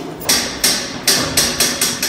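Hurried footsteps on a hard surface, a quick even run of sharp knocks about four a second.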